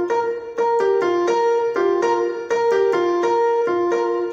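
Electronic keyboard on a piano voice playing a gospel praise-break run drawn from the B-flat blues scale. Overlapping notes follow a rolling, repeating pattern, with a new note about two to three times a second.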